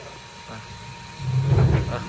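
A heavy carved solid-wood sofa being dragged across a concrete floor, a low scraping rumble that starts a little past halfway as one end is hauled along.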